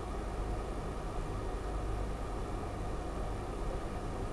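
Steady low hum with faint hiss and nothing else, the background of an open audio line that has gone quiet.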